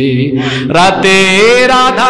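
A man chanting in a long, drawn-out melody: a held low note, then his voice climbs to a higher held note about a second in.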